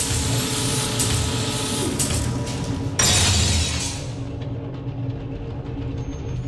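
Cinematic transition sound effect: a rushing swell of noise over a low steady hum, then a sudden louder whoosh-hit about halfway through that fades away.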